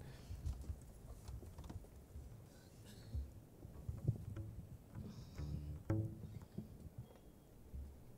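Quiet lull with irregular footsteps and light knocks on a wooden deck, and a brief pitched note a little before six seconds in.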